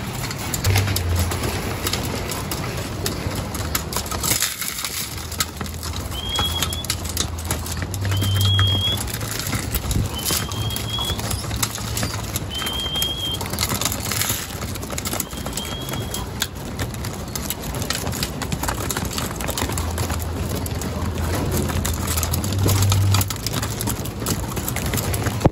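A flock of racing pigeons feeding at a grain trough: low cooing in long stretches, with pecking clicks and wing flutters throughout. Five short, high chirps come about two seconds apart in the middle.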